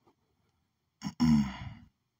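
A man's audible, voiced sigh about a second in. It falls in pitch and lasts just under a second.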